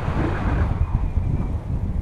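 Wind buffeting the camera's microphone in flight under a tandem paraglider: a loud, steady, gusty low rumble.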